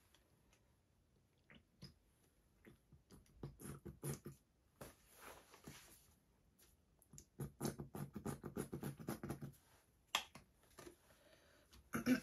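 Quiet handling sounds of plastic paint squeeze bottles: scattered light clicks, and about halfway through a rapid run of short sputtering noises as paint is squeezed out of a nearly empty bottle.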